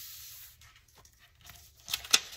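A paper napkin fused to freezer paper rustling as it is folded and pressed flat by hand: a soft rub at the start, then a couple of sharp paper crinkles near the end as the sheet is lifted.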